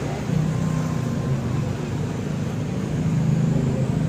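A motor vehicle engine running steadily, a low hum whose pitch shifts a little now and then, with faint voices underneath.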